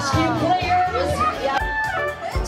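Young children's voices calling and chattering over background music.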